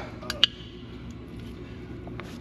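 Two sharp clicks in quick succession, about a third of a second in, as the trailer's seven-way electrical plug is worked in its socket, followed by a steady low hum.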